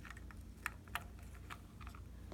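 Light plastic clicks and taps, a handful scattered irregularly, as a fibre-optic light extension is fitted onto a Snap Circuits colour organ module, over a faint low hum.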